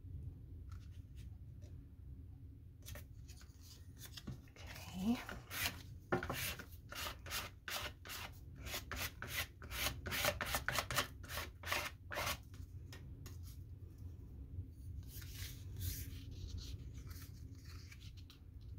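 A run of quick scratchy rubbing strokes as a small plastic tool is pressed and rubbed over glued collage paper to smooth it flat, about three strokes a second for several seconds.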